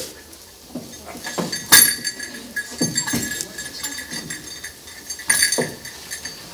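Scattered knocks and clinks of objects being handled. The loudest is a sharp strike about two seconds in, followed by a faint metallic ring. A short rustling burst comes near the end.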